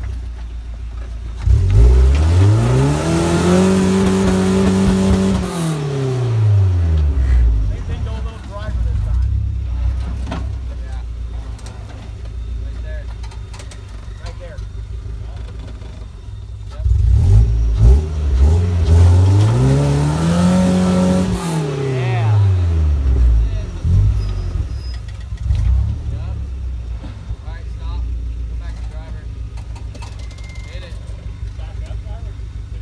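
Engine of a lifted, roll-caged rock-crawling pickup truck, revved hard twice while it tries to climb a steep rock face: each time the pitch rises, holds for about two seconds, and falls back to a low idle.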